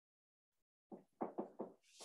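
Dry-erase marker knocking against a whiteboard while writing: a quick run of four or five short taps about a second in, then a brief scratchy stroke near the end.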